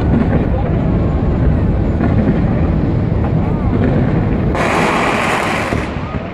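Fireworks display: a steady, dense crackle and rumble from a pyrotechnic waterfall cascading off a bridge, with a sudden loud hiss for about a second near the end.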